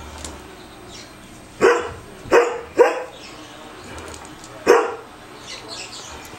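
A dog barks four times in short, sharp barks while wrestling in play with another dog. Three barks come in quick succession, and a fourth follows about two seconds later.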